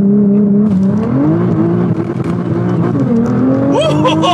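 Nissan GT-R twin-turbo V6, tuned to 660 hp, heard from inside the cabin during a launch-control start. The engine is held steady at launch revs to build boost, then the car pulls away hard with the engine pitch climbing. The pitch dips briefly near three seconds and then climbs again.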